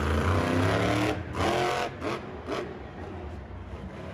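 Monster truck engine revving as the truck drives across a dirt arena, its pitch climbing over the first couple of seconds before the sound drops away quieter.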